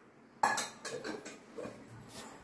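Stainless-steel kitchenware clinking: one sharp clank about half a second in, then a few lighter clinks.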